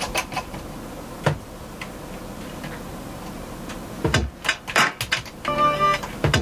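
Drum sounds finger-played on the pads of an Akai MPC3000 sampler: sparse faint clicks and one sharp hit at first, then from about four seconds in a run of loud kick and snare hits, with a short pitched note near the end.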